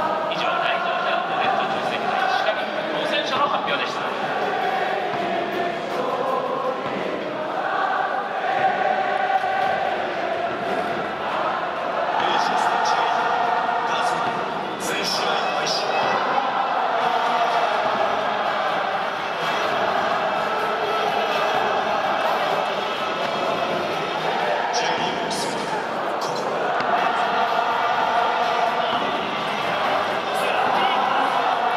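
Large crowd of football supporters singing a chant in unison, in long swelling phrases, with rhythmic thumps beneath it.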